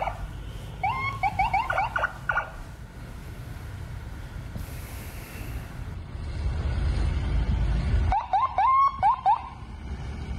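Two bursts of an electronic siren or alarm, a pitched tone sweeping upward several times a second, over a steady low rumble.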